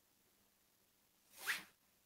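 Near silence, broken by one short rising swish about a second and a half in.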